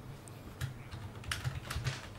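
A few scattered keystrokes on a computer keyboard, short clicks at uneven spacing, mostly in the second half.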